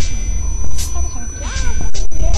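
Experimental electronic music: a heavy bass drone under short hissing noise hits and a steady high whine. In the second half, warbling pitched sounds bend up and down.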